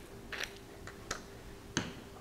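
Cole & Mason pepper grinder being handled after grinding on its finest setting: a short faint grinding rasp near the start, then a few sharp clicks spread over the two seconds as it is moved away.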